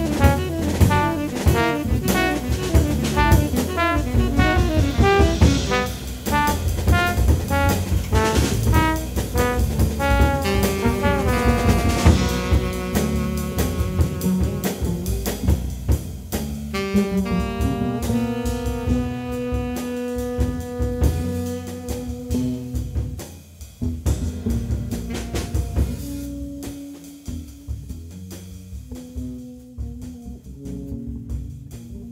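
Live jazz quartet of trombone, tenor saxophone, electric bass and drums. For about the first twelve seconds the horns run fast, dense lines over busy cymbals, then the music thins to long held horn notes and grows quieter toward the end.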